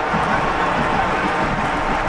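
Loud, steady stadium crowd noise: many voices blended into one dense haze of sound from a packed football ground.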